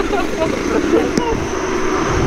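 Snatches of talk over steady street background noise, with one short click just past a second in.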